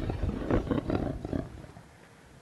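A person's voice giving a loud, rough growling roar in short pulses, dying away about a second and a half in.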